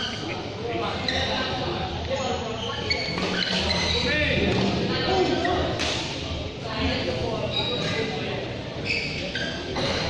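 Indistinct voices talking in a large, echoing sports hall, with a couple of sharp knocks.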